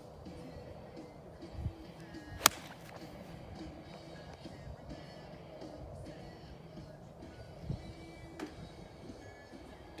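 An 8-iron striking a golf ball: one sharp click about two and a half seconds in, over faint background music.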